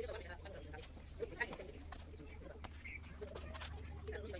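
Faint pigeon cooing over a steady low hum, with a couple of light taps a little over a second in.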